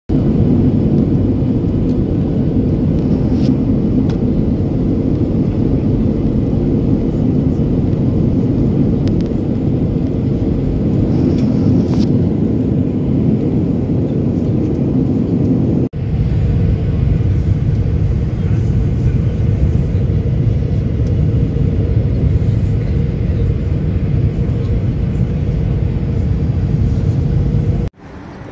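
Steady, loud airliner cabin drone, engines and rushing air, with a low hum running under it; it drops out for an instant about halfway through.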